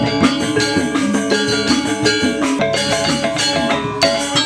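Balinese gamelan music: bronze metallophones struck with hammers in a fast, dense run of ringing notes.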